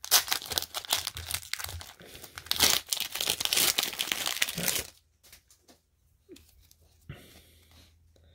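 Foil trading-card booster pack being torn open and crinkled by hand: about five seconds of crackling and tearing, then only faint handling sounds as the cards come out.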